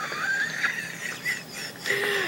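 A boy giggling in a suppressed fit of laughter: a thin, high-pitched squeak that wavers up and down, with a few short breaths.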